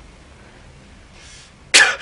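A person coughing once, sharply, near the end after a quiet stretch.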